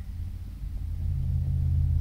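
A low, steady rumble that slowly grows louder.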